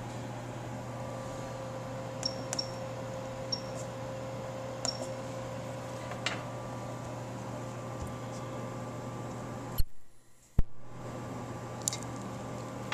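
Steady electrical hum with a few faint clicks and short high-pitched beeps as the ultrasonic welder's keypad controller is set. Near the end come two sharp clicks less than a second apart, with the sound dropping out briefly between them.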